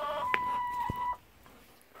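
Domestic hen giving one long, steady call that breaks off about a second in, with a single sharp click partway through.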